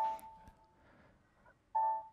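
Two short electronic notification chimes, one at the start and one near the end, each a bright tone that dies away within about half a second. These are computer system sounds that go with the workflow being checked and activated.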